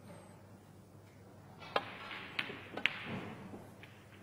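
Snooker shot: the cue tip strikes the cue ball, then two more sharp clicks of the balls hitting each other or a cushion follow within about a second.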